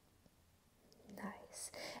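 Near silence for about a second, then a woman's audible breathing, breathy and growing louder through the second half.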